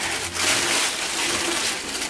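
Tissue paper rustling and crinkling steadily as hands pull the wrapping out of a cardboard sneaker box.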